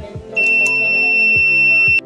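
Buzzer of an LM358 thermistor fire-alarm circuit sounding one steady, high-pitched tone that switches on about a third of a second in and cuts off suddenly at the end: the alarm has tripped because the thermistor is being heated with a lighter flame. Background music plays underneath.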